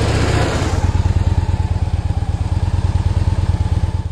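2010 Victory Vision's V-twin engine running as the touring motorcycle rolls up close, with a rush of tyre and wind noise in the first second. The engine then settles into a steady low rumble with fast, even pulses as the bike sits idling.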